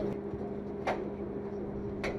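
A steady low mechanical hum at a constant pitch, with a single sharp click a little under a second in.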